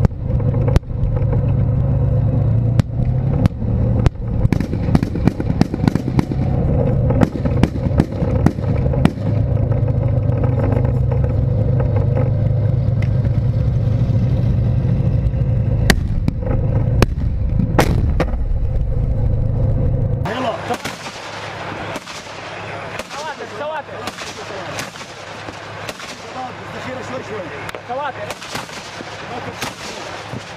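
Tank engine running with a loud, steady low drone, close to the camera on the tank's hull, with sharp cracks of gunfire scattered over it. About twenty seconds in the sound changes abruptly to quieter crackling gunfire with voices calling out.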